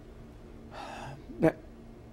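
A man draws an audible breath in through the mouth, about half a second long, in a pause between sentences. A single spoken word follows near the end.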